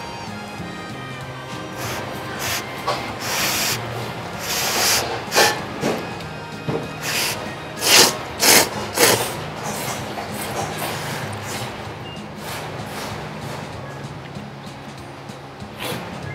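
A person slurping thick ramen noodles: a run of short, loud slurps from about two to ten seconds in, the loudest around the middle, over steady background music.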